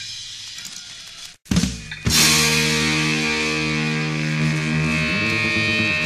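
The end of one punk rock track dies away, a brief silent gap follows, and the next track opens with a distorted electric guitar chord held and ringing, with a slight shift about three seconds after it starts.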